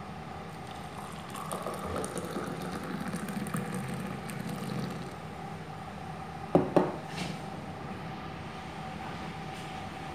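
Hot milky masala tea poured from a steel pan into a glass tumbler, a liquid filling sound lasting about four seconds. A short, sharp pitched sound comes about two-thirds of the way through.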